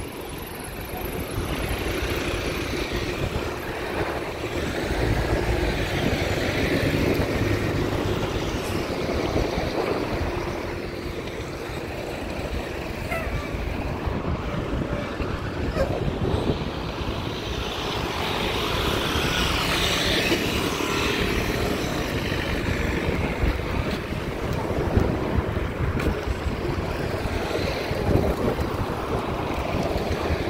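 Road traffic passing close by: car and truck engines and tyres swell and fade as vehicles go past, with a low engine hum in the first ten seconds or so.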